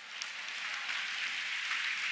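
A large audience applauding, building up over the first half second and then holding steady.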